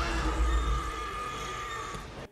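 Film soundtrack of a woman's long, held scream of terror, fading slightly, over a deep rumble.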